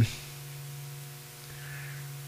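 Steady low electrical hum with faint static hiss in the microphone's signal, heard in the pause between words.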